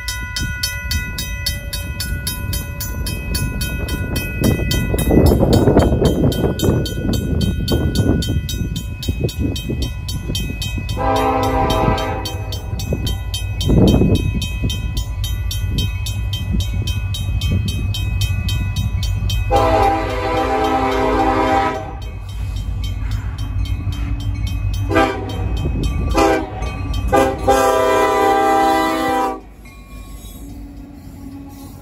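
A RACO mechanical crossing bell rings rapidly and steadily at the crossing. Over it, an approaching Union Pacific freight locomotive sounds its air horn in the grade-crossing pattern: a long blast, another long one, a short one, then a final long blast that stops just before the locomotive reaches the crossing.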